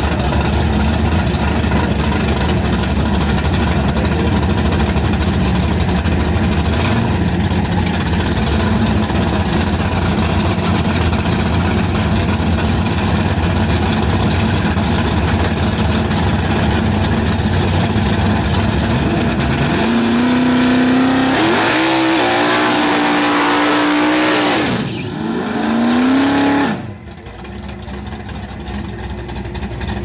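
Fox-body Ford Mustang drag car with a loud, lumpy idle; about twenty seconds in the engine revs up and holds high revs under a loud screeching hiss of spinning rear tyres, a burnout, then drops and revs once more before cutting off suddenly to a quieter idling engine.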